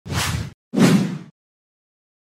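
Two whoosh sound effects from an animated logo intro, each about half a second long; the second is louder and deeper.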